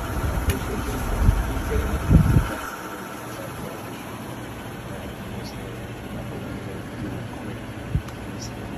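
Outdoor background noise from a phone video: a low rumble, heavier and gusty for the first two and a half seconds, then steadier and quieter, with faint indistinct voices.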